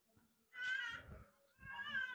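Two fairly faint, high-pitched animal calls, each lasting about half a second to a second, roughly a second apart.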